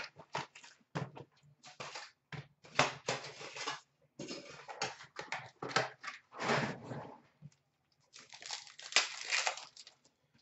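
A cardboard trading-card box being opened and its foil card packs handled, crinkling, tearing and rustling in irregular bursts.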